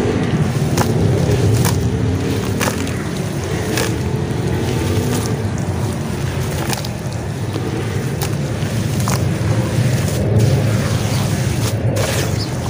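Red dirt crumbled by hand into a basin of water and squished into wet mud, with scattered sharp crackles over a steady low rumble.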